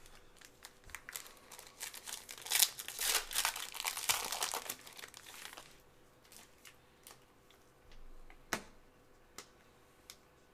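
Plastic wrapper of a trading-card pack crinkling as it is torn open and handled, in a dense burst lasting a few seconds. Near the end come a couple of sharp clicks as the cards are handled.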